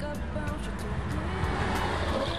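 Steady low rumble of a car driving, heard from inside the cabin, with music and occasional clicks over it.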